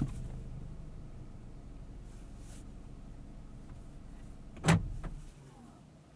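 Mazda CX-50's 2.5-litre turbo inline-four and tyres humming low and steady inside the cabin as the car rolls slowly through a parking lot, slowly getting quieter. About three-quarters of the way through comes one sharp click, after which the hum drops away.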